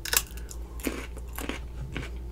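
A bite into a crisp piece of raw cucumber just after the start, then close-up crunchy chewing with a few sharp, separate crunches.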